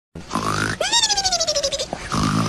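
Cartoon snoring sound effect: a short rough snore on the in-breath, then a long wavering whistle on the out-breath that slowly falls in pitch.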